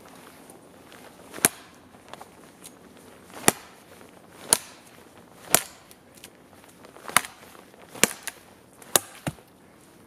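Schrade Makhaira brush sword, a machete-like steel chopping blade, hacking into a thin green sapling: about eight sharp chops roughly a second apart, the last two close together, until the stem is cut through.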